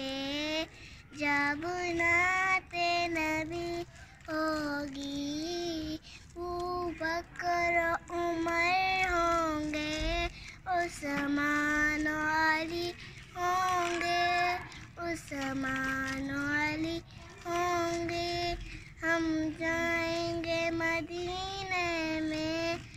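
A young girl singing a naat, an Urdu devotional song, unaccompanied: long held notes in phrases of a few seconds, with short breaths between them.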